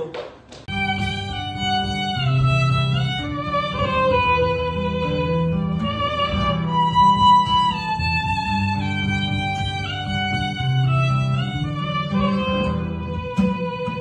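Violin and acoustic guitar playing together, the violin holding a sustained melody over guitar chords. The music starts abruptly just under a second in.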